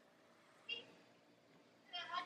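Near silence: room tone, broken once by a brief faint high sound about two-thirds of a second in.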